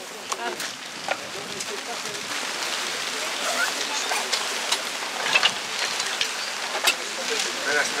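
Steady rain falling, with scattered drops tapping sharply close by.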